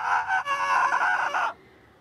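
A man's long, high scream held on one pitch on a roller coaster as it turns upside down, cutting off suddenly about one and a half seconds in.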